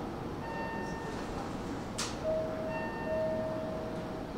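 Railway platform chime: a short electronic melody of bell-like tones sounding at a stopped train with its doors open. A sharp click comes about halfway through.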